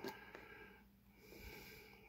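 Near silence: faint rustling of a cardboard trading-card box being worked open by hand.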